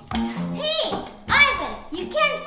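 Children's voices in three short, high-pitched utterances over background music.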